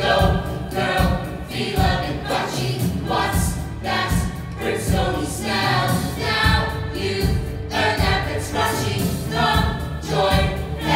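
A stage musical's cast singing together as a chorus over a band with a steady beat of about two strokes a second, recorded live in the theatre.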